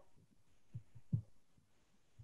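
A few faint, short low thumps over quiet room tone.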